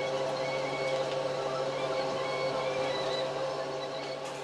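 Electric nail drill (e-file) running steadily with a motor whine, grinding old gel polish off toenails.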